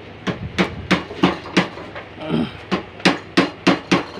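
Sharp metal clicks from hand work on a Pegasus W500 industrial piping sewing machine, about ten in a row at roughly three a second, with a short break about two seconds in.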